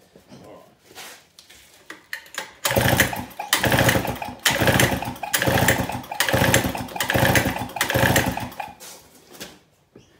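A 5 hp single-cylinder two-stroke Tohatsu outboard powerhead is cranked by its recoil pull-start about seven times in quick succession, starting about two and a half seconds in, each pull spinning the engine over for under a second. It is a compression test with the throttle wedged wide open and a gauge in place of the plug, so the engine is turned over but does not fire; the shaved head gives just over 140 psi.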